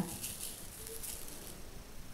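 Granulated sugar sprinkling from a tablespoon onto cottage cheese and grated apple, a faint soft rustle that fades out after about a second and a half.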